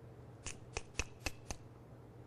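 Five sharp clicks in quick succession, about four a second, over quiet room tone.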